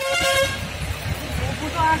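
A vehicle horn toots briefly at the start, then a jeep's engine and road noise heard from inside the cabin, with voices near the end.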